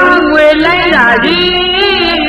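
A woman singing a Burmese song in a high voice over instrumental accompaniment, the melody gliding and bending from note to note.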